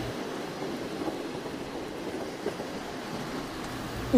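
Steady, even background noise with no speech: the ambient sound bed of a voiced roleplay track, continuous and without distinct events.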